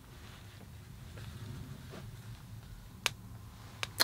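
Quiet room tone with a faint low hum, broken by two short sharp clicks near the end.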